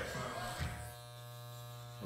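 Electric hair clippers buzzing steadily while cutting hair; the buzz comes in about half a second in as the tail of music fades out.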